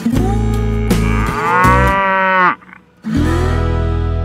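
Cow mooing: one long drawn-out moo, a brief break, then a second moo starting about three seconds in, over background guitar music.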